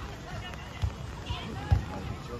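Players' voices calling out across a sand volleyball court, with two low thumps about a second apart; the second thump, near the end, is the loudest.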